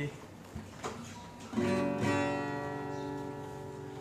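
Yamaha acoustic guitar being handled, with a couple of light knocks as it is picked up. About one and a half seconds in, a chord is strummed and left ringing, slowly fading.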